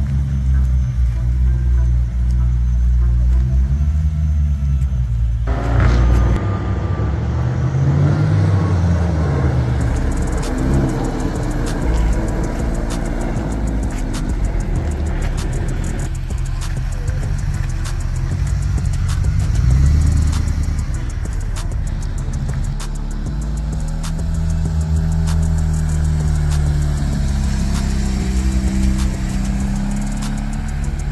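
A succession of cars driving past one after another, each engine revving up and falling away as it pulls off, with sudden changes between passes. It opens with a BMW E90 M3's V8. Music plays underneath.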